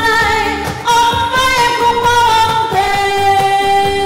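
Two women singing a duet into microphones over backing music with a steady beat, holding long notes that step down to a lower pitch about two-thirds of the way through.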